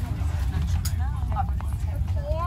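Steady low rumble inside a train carriage, with passengers' voices talking over it and a couple of sharp clicks.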